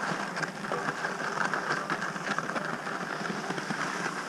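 Skis sliding steadily over groomed snow as a rope tow pulls the skier uphill: an even scraping hiss with many small clicks and crackles.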